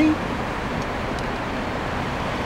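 Steady noise of road traffic passing on the street, with cars going by.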